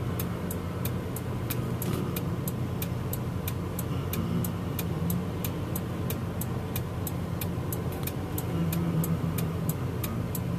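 Steady hum of a car's running engine heard from inside the cabin, with a regular sharp clicking about three times a second.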